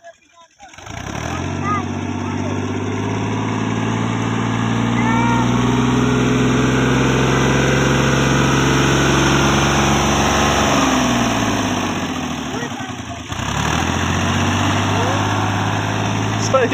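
Fiat tractor's diesel engine running hard with a steady note while its rear wheels churn through deep mud, starting about a second in; the engine note drops away briefly near the end, then picks up again.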